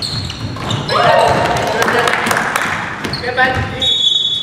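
Live sound of an indoor basketball game: a basketball bouncing on a hardwood gym floor and players' voices, echoing in the hall. A loud shout comes about a second in.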